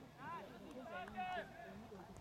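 Distant voices shouting and calling out across a football pitch during play, several short calls with the loudest a little past halfway.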